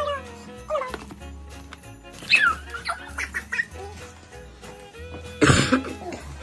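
A small dog making a few short high calls over steady background music, with a loud short burst near the end.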